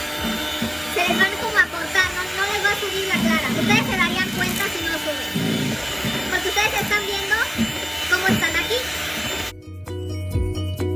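Electric hand mixer running steadily as it whips egg whites into a foam, with a voice over it. It cuts off suddenly near the end, where music takes over.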